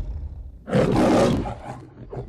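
Lion roar of the Metro-Goldwyn-Mayer logo: one loud roar starts under a second in and fades away within about a second, over a low rumble.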